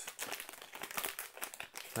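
Plastic trading-card pack wrapper crinkling in the hands: a dense run of small, irregular crackles.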